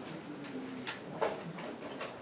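Quiet room tone with two faint, short clicks about a second in.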